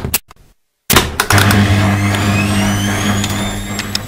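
A few clicks, then a front-loading washing machine starts about a second in and runs with a steady low hum and a high whine rising in pitch.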